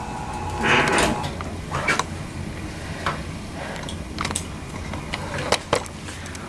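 Powered treatment chair tipping back, its motor giving a steady low hum, with scattered light clicks and a brief rustle about a second in from instruments and gauze being handled.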